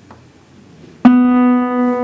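Acoustic guitar's G string, fretted at the fourth fret, plucked once about a second in and left ringing as a single steady note. Before it there is only a quiet lull.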